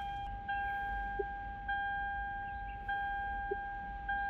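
A car's electronic warning chime: a steady, fairly high tone that restarts about every 1.2 seconds, with hardly a gap between notes.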